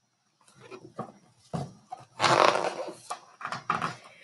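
A hardcover picture book being handled and lowered: a few knocks and rustling, with a louder rush of noise in the middle.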